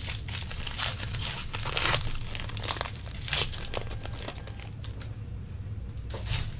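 A trading card pack's wrapper being torn open and crinkled by hand: a run of irregular crackly rustles, thickest in the first half and thinning out later.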